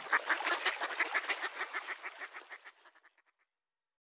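A duck quack sample repeated in a rapid, even run of about seven quacks a second with no beat or bass beneath it, fading away over the first three seconds as the track's outro.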